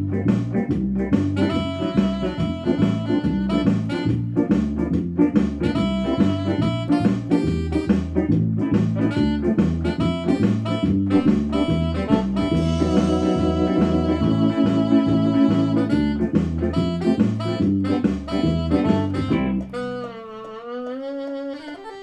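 Synthesizer keyboard playing an upbeat jazzy instrumental passage, with a steady bass line under chords. About twenty seconds in, the bass and chords drop out, leaving a single held lead note that wavers with a wide vibrato.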